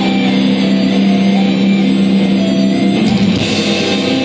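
Live rock band playing loudly, with distorted electric guitars and a drum kit. A low chord is held for about three seconds before the music changes near the end.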